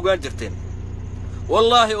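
A man talking, pausing for about a second in the middle, over the steady low hum of a vehicle engine idling, heard from inside the cab.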